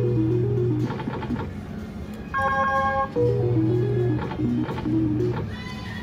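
Three-reel Blazing 7s slot machine playing its electronic spin tune, twice: each spin brings a short chord of high beeps, then a stepping, falling melody over a low drone while the reels turn, repeating about every three seconds.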